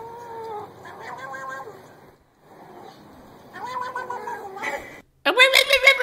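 Domestic cat meowing in three long, drawn-out calls. The last starts about five seconds in and is the loudest.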